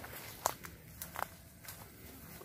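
Footsteps on dry ground: several short steps, the loudest about half a second in, over a faint outdoor background.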